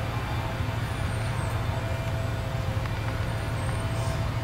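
A steady low hum with a few faint steady higher tones over it, unchanging throughout.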